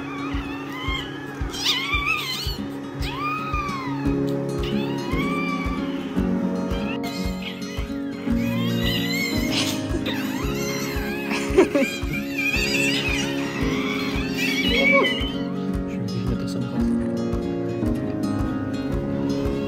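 A newborn puppy crying in short, high, squeaky squeals that rise and fall, several in a row. Background music with a steady beat plays underneath.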